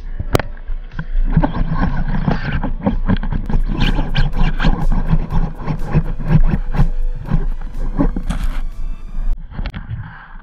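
Underwater sound in a camera housing: a sharp crack about a third of a second in, then dense, irregular crackling and clicking over a steady low rumble of moving water and bubbles, fading out near the end.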